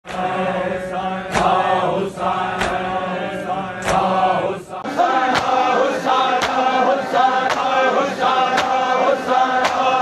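Large group of men chanting a noha in chorus, with sharp slaps of hand-on-chest matam in time with it. The slaps come slowly at first and quicken to about two a second about halfway through.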